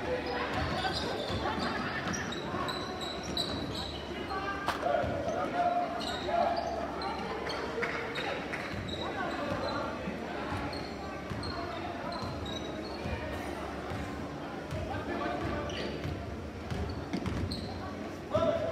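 Basketball being dribbled on a hardwood gym floor, a string of bounces over steady spectator chatter in an echoing gym.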